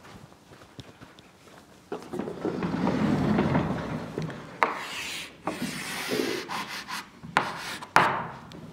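A sliding lecture-hall blackboard is pushed up along its rails, a loud rumble of about two and a half seconds starting two seconds in. Then comes chalk on the board: sharp taps and scratchy strokes as a diagram is drawn.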